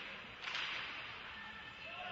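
Ice hockey play in a rink: a sudden sharp slap-like scrape about half a second in that fades quickly, over a steady hiss of rink ambience.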